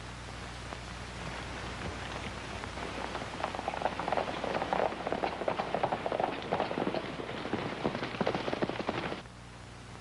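Hoofbeats of several horses galloping, a rapid clatter that grows louder from about three seconds in and cuts off abruptly near the end.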